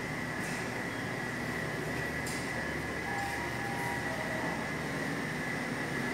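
Steady indoor ventilation hum with a constant high whine running through it, and a couple of faint clicks.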